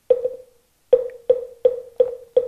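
Moktak, the Korean Buddhist wooden fish, struck: two quick knocks, then from about a second in a steady run of about three knocks a second, each with a short ringing tone. It keeps the beat leading into mantra chanting.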